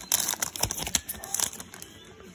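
Crinkling of a Pokémon booster pack's foil wrapper as the cards are pulled out of the freshly opened pack. A dense run of crackles dies down about a second and a half in.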